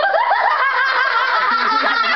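Children laughing and giggling, several voices overlapping without a break; a lower voice joins in about a second and a half in.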